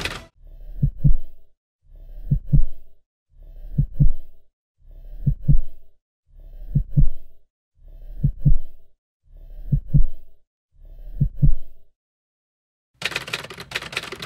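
Heartbeat sound effect, a slow steady lub-dub: eight deep double thumps about one and a half seconds apart. A brief louder burst of noise follows near the end.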